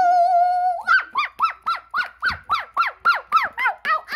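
A high child's voice holds one long wavering note for about a second, then breaks into a rapid run of short cries that rise and fall in pitch, about three a second. It is play-fighting noise for toys, with no words.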